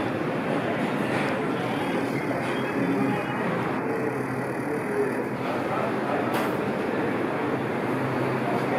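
Coffee shop ambience: a steady din of indistinct voices and room noise.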